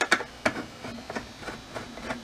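A few scattered small metallic clicks and ticks of a screwdriver working the T15 Torx screws in a dishwasher's stainless steel door panel.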